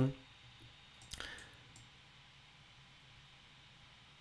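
A single short click about a second in, with a couple of fainter ticks after it, from a computer mouse working the charting software; otherwise quiet room tone.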